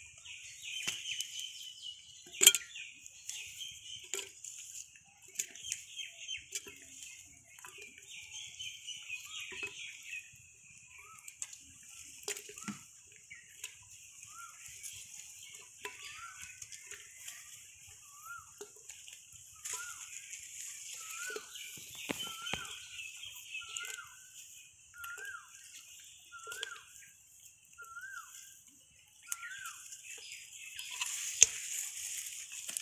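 Village birds calling, with fowl clucking. Short, hooked calls repeat about once a second through the second half, over a steady high chatter, with scattered sharp knocks, the loudest about two and a half seconds in.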